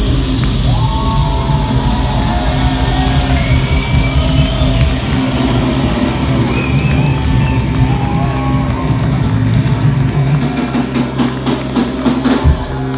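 Live rock band playing loudly in a hall, a sung vocal line wavering over sustained low chords, with sharp hits near the end.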